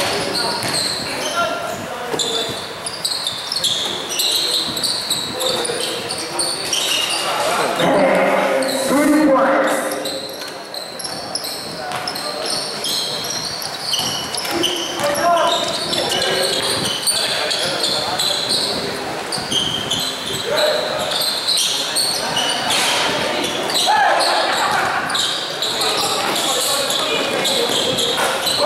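Basketball game in a large gym: the ball bouncing on the court amid a steady mix of players' and spectators' voices and shouts, louder in bursts.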